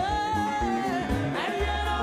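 Live Ghanaian gospel highlife band music. A voice slides up into one long held note over guitar, keyboard and bass.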